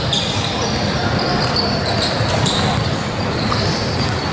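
Basketball being dribbled on a hardwood gym court, with voices of players and spectators in the large, echoing gym.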